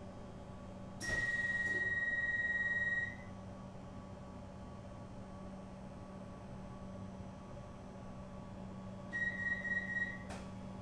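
Comeng suburban train carriage humming steadily while a high electronic door warning tone sounds for about two seconds, starting with a click a second in. Near the end the tone comes back as rapid beeps, followed by a sharp knock.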